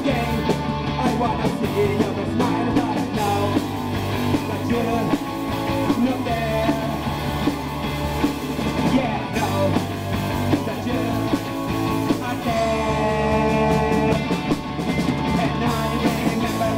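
A live punk rock band playing electric guitar, electric bass and drums, with singing that stands out most clearly a few seconds before the end.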